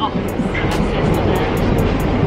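A Métro train running, heard from inside the carriage as a steady, loud rumbling noise, with music playing underneath.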